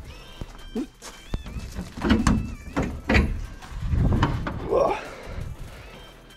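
A few sharp knocks and dull low thumps, with handling noise from the camera.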